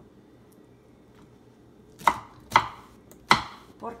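Kitchen knife chopping pineapple on a wooden cutting board: three sharp chops in the second half, the last the loudest.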